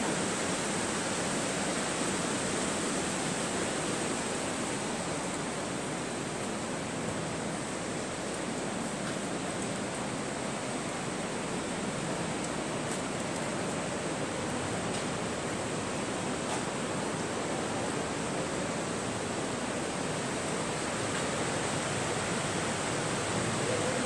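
Steady rushing of a fast mountain river running over rocks and gravel in a gorge below, an even unbroken roar of water. A few faint clicks show through it.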